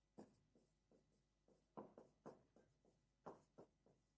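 Marker pen writing on a whiteboard: a faint, irregular run of short strokes and taps as words are written out.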